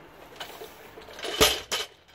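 Loaded barbell lowered from a deadlift and set down on wet pavement: a heavy thud with the metal plates clanking, about one and a half seconds in, then a second, smaller clank.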